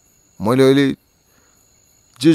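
A man's voice saying a single drawn-out "I" about half a second in, then a pause in which only a faint, evenly repeating high chirping is left.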